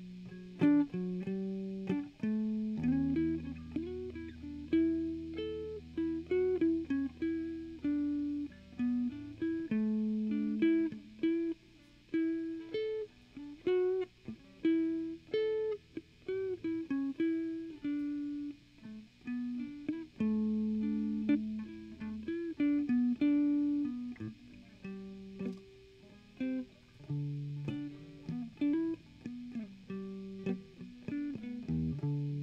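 Electric guitar playing a blues lead: runs of quick single notes, with lower notes held for a few seconds at times.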